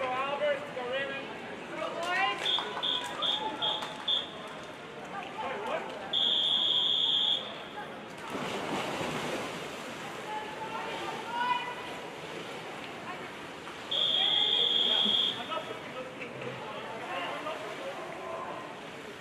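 Referee's whistle starting a backstroke race: five short blasts, then a long blast about six seconds in that sends the swimmers into the water, with a rush of splashing just after it. A second long blast about fourteen seconds in calls them to take the starting position at the wall. Crowd chatter fills the pool hall throughout.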